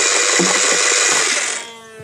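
Modified Nerf Vortex Nitron 'Boom Nitron' disc blaster firing continuously, its motor whirring loud and steady as discs feed through. About one and a half seconds in, the firing stops and the motor winds down with a falling whine.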